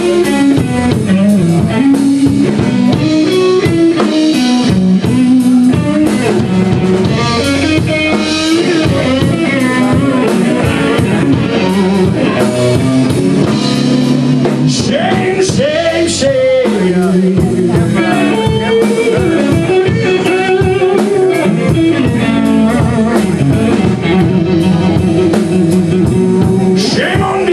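Live blues-rock band playing: electric guitar lead over bass guitar and a drum kit keeping a steady beat, with guitar string bends about midway.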